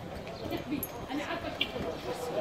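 Indistinct voices of several people talking, with unclear words, over street background noise.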